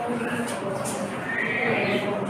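Several students' voices chattering over one another in a classroom, with one higher voice rising about halfway through.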